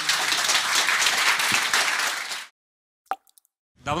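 Audience applauding with dense, many-handed clapping, which cuts off abruptly about two and a half seconds in. After a moment of silence there is a single short pop, then a man's voice begins near the end.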